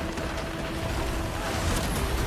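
Film-trailer sound effects of a giant shark bursting through a wooden dock: a rush of churning water and spray. A steady low held musical note runs underneath.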